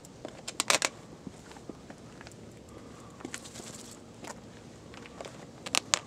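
Shoes stepping and scuffing on the road surface in two quick clusters of sharp clicks, about a second in and again near the end, with a few fainter single steps between.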